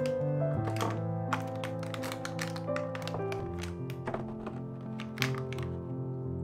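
Soft piano background music over a quick run of light taps and knocks, about three or four a second, from eggs and a clear plastic egg container being handled and set down on a marble countertop; one sharper knock stands out near the end.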